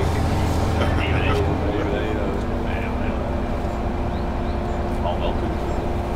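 An engine running steadily, with people talking in the background. About two seconds in, its low drone drops away and a steadier, higher hum takes over.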